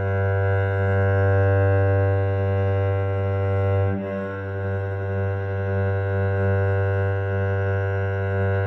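Cello bowed on one open string: a single low note held through a slow full-length down-bow, then a bow change about halfway through that briefly dips the sound, and a slow full-length up-bow on the same note.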